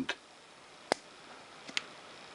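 Plunger of a vintage Onoto plunger-filler fountain pen being pushed down, giving a faint, sharp pop about a second in and a smaller click shortly after. The pop at the end of the stroke is taken as a sign that the restored plunger and its seals are working.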